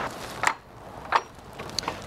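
Three sharp clicks as the metal latch of a wooden fence gate is worked and the gate is pushed open.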